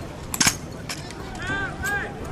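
A sharp slap-like knock about half a second in, from the drill rifles being handled in the closing movements of the routine, with voices of onlookers around it.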